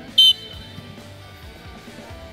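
One short, loud, shrill whistle blast about a quarter second in: a coach's whistle, the signal that starts the sprint. Background music plays underneath.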